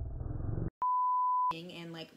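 A steady 1 kHz censor bleep lasting about two-thirds of a second, cut in sharply after a muffled rumbling sound stops abruptly. Talking resumes right after it.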